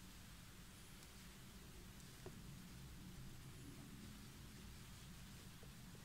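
Near silence: faint room tone with a low steady hum, and a single faint click a little over two seconds in.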